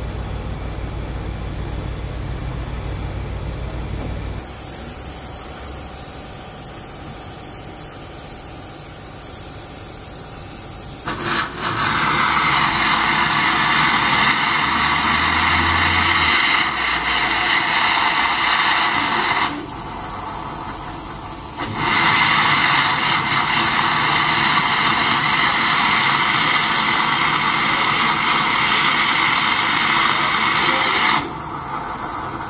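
Steam hissing from a pipe beneath the Dübs-built B6 tank locomotive No. 2109, a loud steady jet that starts about eleven seconds in, breaks off for about two seconds near the middle, then resumes. Before it, a low hum and a fainter high hiss.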